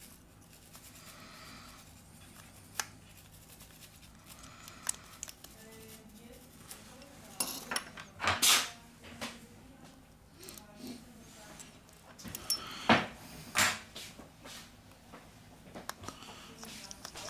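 Precision screwdriver and small phone screws being handled: sparse light clicks and taps of metal on the phone and the work surface, with a few louder taps about halfway through and again later on, over a faint steady hum.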